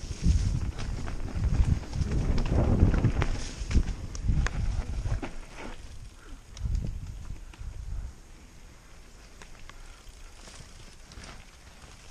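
Mountain bike riding down a rough dirt trail: tyre noise, rattles and knocks from the bike, and wind buffeting the helmet-mounted microphone. It is loud and irregular for the first five seconds or so, surges again around the seventh second, then drops to a quiet roll with scattered clicks after about eight seconds.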